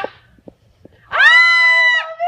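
A woman's long, high-pitched squeal of excitement, held at one pitch, starting about a second in after a few faint clicks.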